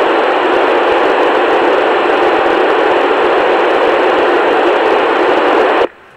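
Steady hiss of an FM amateur-radio receiver, a Yaesu FT-897D, with no signal coming in: the space station has stopped transmitting after "over". The hiss cuts off suddenly near the end as the station's carrier returns.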